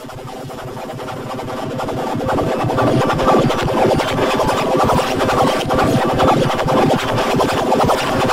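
Heavily distorted, effects-processed logo jingle with a harsh, scratchy texture. It fades in and builds louder over the first few seconds, then holds loud.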